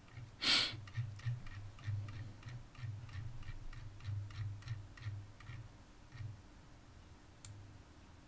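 A short noise about half a second in, then light clicks at about three a second, each with a soft low knock, stopping about six seconds in.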